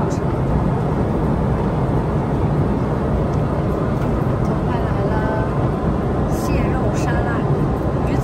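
Steady cabin noise of an airliner in flight: an even rush strongest in the low range, with faint voices near the middle.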